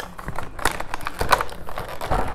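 Clear plastic clamshell packaging crackling and clicking as it is handled in the hands, a quick irregular run of sharp clicks.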